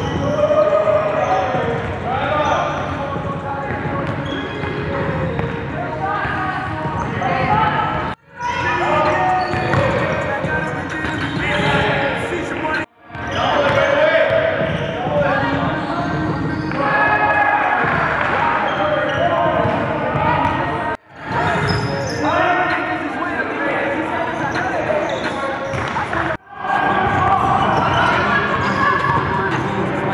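Live sound of a basketball game in an echoing gym: a ball bouncing on the hardwood court amid indistinct voices. The sound drops out suddenly for a moment four times.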